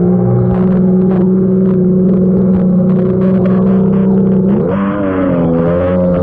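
Kawasaki Ultra 150 jet ski's three-cylinder two-stroke engine running steadily at high speed, with water spray hissing against the hull. The revs rise about five seconds in.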